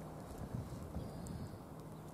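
Soft footsteps on a dirt path, a few dull thumps about half a second and a second in, over a faint low rumble.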